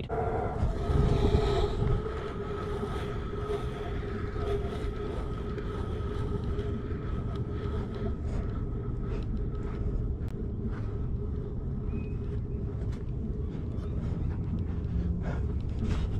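Pro scooter wheels rolling steadily on a hard court surface, a continuous low rumble with a steady hum in it that fades in the second half. Light clicks scattered through it as the wheels pass over bumps and cracks.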